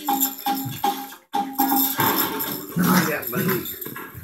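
Music playing from a television, with a hand-percussion rhythm and a short note repeated several times in the first second and a half.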